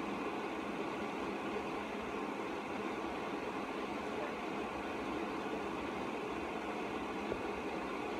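Steady room noise: an even, unchanging hiss and low hum with no distinct events.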